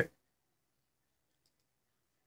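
Near silence with a few faint clicks, just after a man's voice trails off at the very start.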